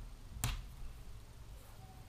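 A single sharp click about half a second in, over faint rustling of hands smoothing crocheted cotton fabric on a wooden table.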